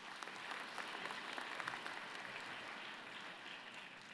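Audience applauding, many hands clapping together in a steady patter that thins out near the end.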